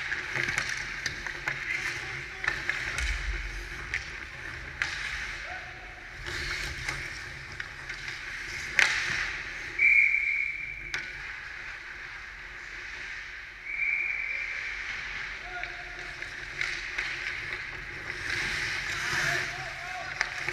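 Ice hockey play heard from behind the goal: skate blades scraping on the ice, with stick and puck clacks and a sharp puck impact about nine seconds in, and players calling out. Two brief high tones sound, one just after the impact and another a few seconds later.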